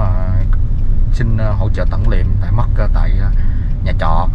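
A person talking over the steady low rumble of a van driving along, heard from inside the cabin.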